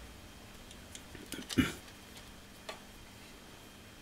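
Quiet workbench with a faint steady hum, and a few small ticks and clicks from hands working a soldering iron against a wire joint. A single short spoken syllable comes about a second and a half in.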